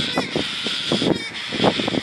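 Galahs (rose-breasted cockatoos) calling with short, harsh screeches, several in quick succession, over a steady high-pitched background hiss.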